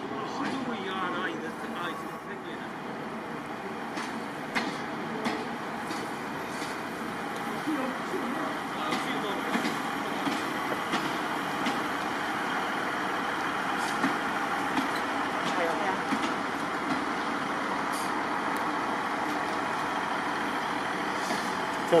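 ScotRail Class 158 diesel multiple unit pulling slowly into the platform, its underfloor diesel engines running steadily. The sound grows gradually louder as the train draws alongside, with a few sharp clicks from the wheels and running gear.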